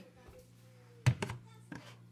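A sharp knock of a plastic tumbler being handled among stacked cups, about a second in, with a lighter knock near the end.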